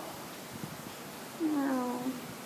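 Quiet room tone, then near the end a single drawn-out vocal sound from a woman, falling in pitch like an admiring "ooh".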